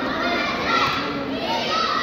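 Many children's voices shouting and chattering at once, with several high calls rising over the steady din of a large hall.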